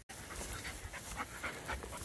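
A working border collie panting quietly as it rolls on its back in dry bracken, with the fronds crackling and rustling under it in short irregular strokes.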